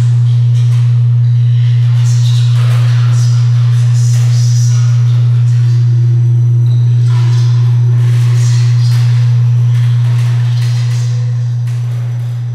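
A loud, steady deep drone from the installation's big wooden-cabinet subwoofer, one unchanging low tone with faint shimmering, ringing tones above it. It starts to fade about ten seconds in.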